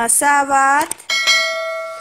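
Subscribe-button overlay sound effects: a few quick clicks and a short pitched sound, then a bell ringing out steadily for nearly a second.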